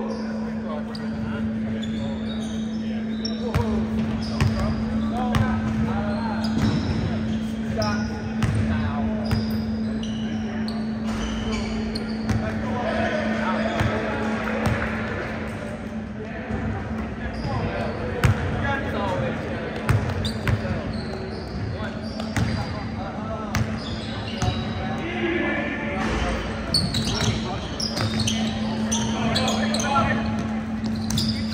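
A basketball bouncing on a hardwood gym floor, with short high sneaker squeaks and players' and spectators' voices echoing around the hall over a steady low hum.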